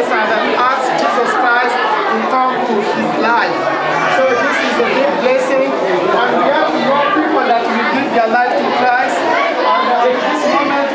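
Only speech: a man talking without pause, with other voices chattering.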